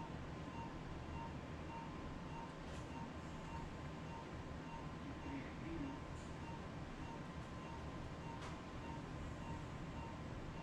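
Operating-room equipment: a steady hum and airflow, with a soft electronic beep repeating about twice a second and a few faint clicks.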